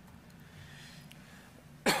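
A man coughs once, abruptly, near the end, after a pause holding only a faint low room hum.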